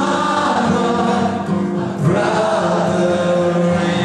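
Live acoustic performance: a man sings long, held notes over a strummed acoustic guitar.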